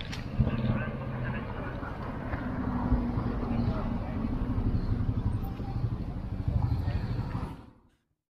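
Roadside street sound: a motor vehicle running, with indistinct voices in the background, fading out near the end.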